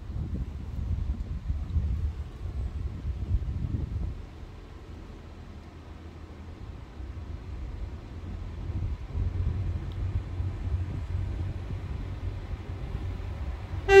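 Northern Class 195 diesel multiple unit drawing slowly along the platform, a low rumble from its underfloor diesel engines that dips midway and builds again as the train nears. Wind buffets the microphone.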